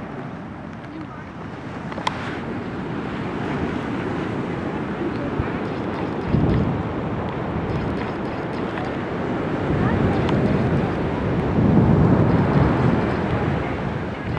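Wind buffeting the microphone over a steady wash of surf, with stronger low gusts about six seconds in and again near the end.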